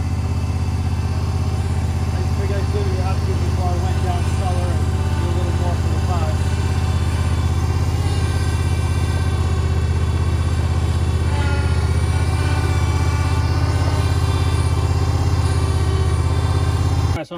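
John Deere 400 garden tractor's engine running steadily as the tractor is backed slowly up to the rototiller's hitch.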